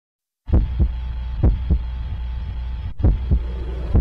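Heartbeat sound effect: four double low thumps in a lub-dub pattern over a steady low hum, starting about half a second in, with a longer gap between the second and third pairs.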